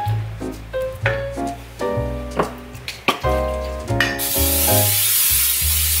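Background music with a bass line and a melody throughout; about four seconds in, loud, steady sizzling of mashed-potato cakes frying in a skillet starts and keeps going.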